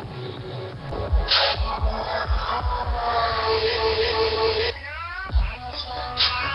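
Electronic dance music from a live producer set, heard through a low-bandwidth web stream: a kick-drum beat under a held synth note, then a quick rising synth sweep about five seconds in.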